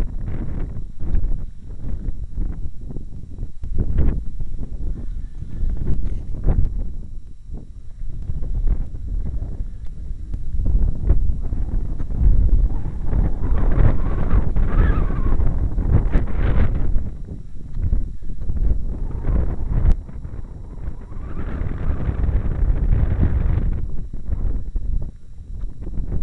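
Wind buffeting a body-worn camera's microphone as a low rumble, with irregular footsteps and knocks on the riveted steel girder of an old railway bridge.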